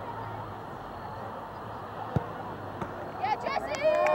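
A single sharp thud of a soccer ball struck for a free kick, a little over two seconds in, over steady open-field background noise. Players' shouts rise near the end.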